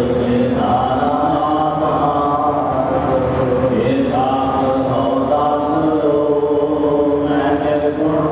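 A group of voices chanting a Sikh hymn together in long, held notes that slide from one pitch to the next.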